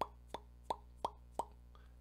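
Five short clicking pops made by a person, evenly spaced about three a second.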